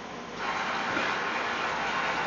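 Steady rushing background noise that comes up about half a second in.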